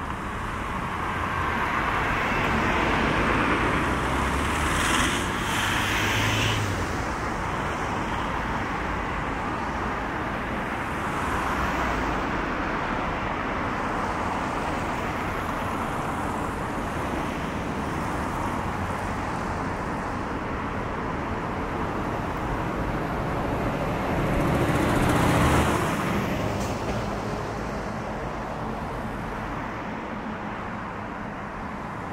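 Continuous road traffic on a busy multi-lane city street, with cars passing close by. The sound swells louder as vehicles go by about 2 to 7 seconds in and again around 25 seconds.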